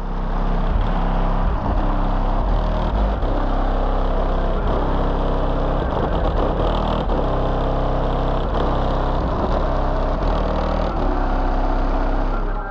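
Very loud car-audio bass demo from a van's subwoofer system. Deep sustained bass notes shift in pitch every second or two, and the recording is overloaded and distorted.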